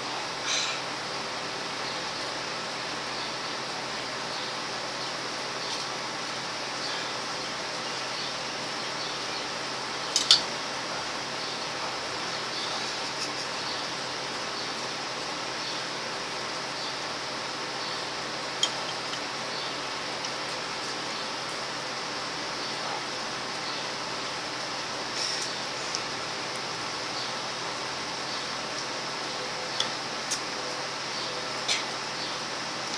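Steady background hiss, broken by a few short sharp clicks; a double click about ten seconds in is the loudest.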